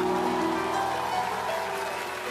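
Live band playing held notes under audience applause and cheering, with no singing.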